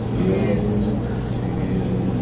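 A man's voice speaking, over a steady low hum.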